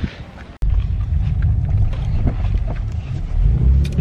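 A hand brushing over the camera microphone, then after an abrupt cut about half a second in, a steady low rumble of a car heard from inside its cabin.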